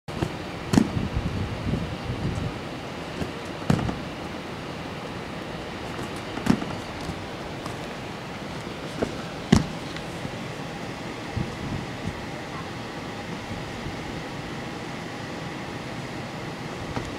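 A handful of sharp knocks and thuds from gymnastics equipment, as a gymnast jumps to the bar and lands on mats. The loudest come about a second in and again near ten seconds, over the steady noise of a busy gym with voices in the background.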